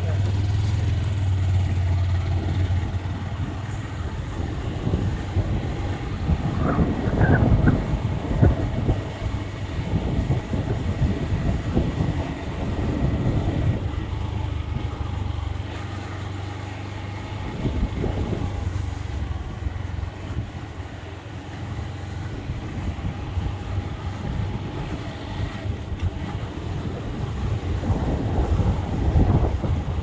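A motor vehicle driving along a dirt road: a low engine hum, strongest in the first few seconds, under rough wind and road noise.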